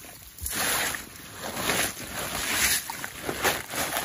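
Footsteps brushing through tall wet grass, a rushing swish with each stride about once a second.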